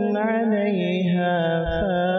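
A man's voice in melodic Quran recitation (tajweed), drawing out one long unbroken note that bends slowly up and down in pitch.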